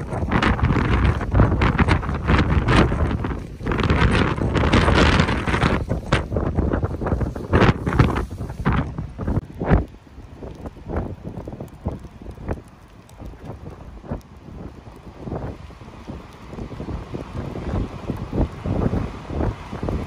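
Strong wind buffeting the microphone, loudest in the first half. After about ten seconds it drops to gustier, quieter wind over rough surf breaking on the shore.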